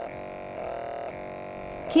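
Rodan + Fields Redefine Macro Exfoliator humming steadily as its tip is glided over the skin, the drone swelling slightly partway through. The hum is the sign that the tool is running and its tip is in contact with the skin.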